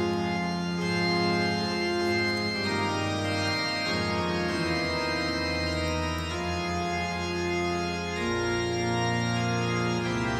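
Organ playing slow, sustained chords that change every few seconds, with a lower bass note entering about eight seconds in.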